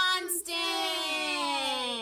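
Voices of a woman and children chanting the word "constant", the end drawn out into one long sing-song note that slides slowly down in pitch for about a second and a half.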